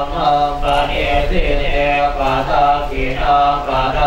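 Buddhist monks chanting in Pali, a steady recitation held on a low, near-constant pitch.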